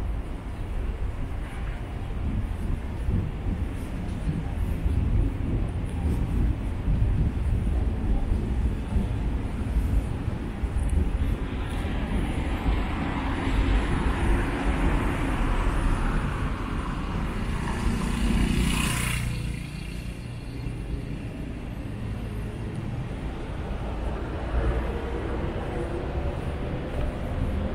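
Street ambience with a steady low rumble of road traffic. A vehicle passes by: its hiss and rumble build from about halfway and peak sharply about three-quarters of the way through, then fall away.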